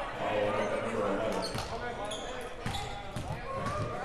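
A basketball bounced several times on a hardwood gym floor by a player at the free-throw line, under indistinct chatter of voices echoing in the gym.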